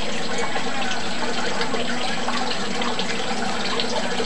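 Pellet stove's blower fans running during ignition: a steady rush of air with a faint low hum.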